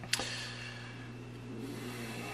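A single short click just after the start, over a steady low electrical hum.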